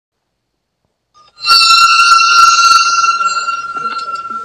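A bright ringing chime that starts suddenly about a second and a half in, holding one steady high tone with a brief crackle of clicks at its start, then slowly fading away.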